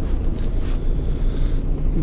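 Steady low rumble inside a city bus: engine and road noise heard from the passenger cabin.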